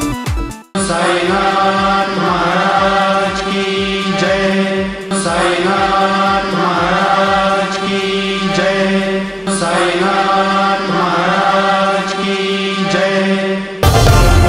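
Recorded devotional chant over a steady drone, one sung phrase repeating about every four and a half seconds. It starts after a brief burst of rhythmic music is cut off, and loud theme music begins near the end.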